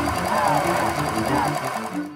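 Mail-ballot envelope processing machine running with a rapid, even clatter, under background music of short repeated low notes.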